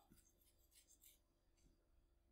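Near silence: room tone with a low hum and a few very faint soft ticks.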